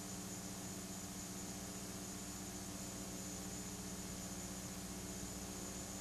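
Faint, steady hiss with a low hum under it: the background noise of an old recording, with no other sound rising out of it.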